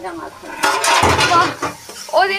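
Metal ladle stirring and scraping vegetables in a metal kadhai, clinking against the pan, with a dense noisy stretch lasting about a second from about half a second in.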